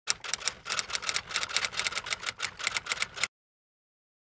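Typewriter-style key-clatter sound effect: quick, irregular clicks, several a second, for about three seconds, then it cuts off suddenly.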